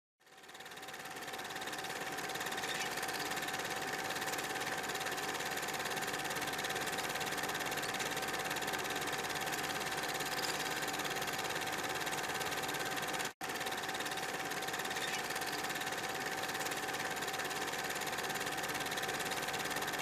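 Steady electronic buzz and hiss with a constant hum tone, fading in over the first two seconds and cutting out for an instant about 13 seconds in.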